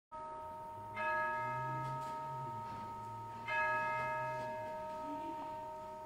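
A bell struck twice, about two and a half seconds apart, each strike ringing on with several steady tones and slowly fading.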